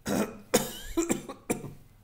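A man coughing and clearing his throat: four short coughs in quick succession over about a second and a half.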